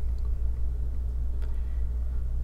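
A steady low background hum with a faint short tick about one and a half seconds in.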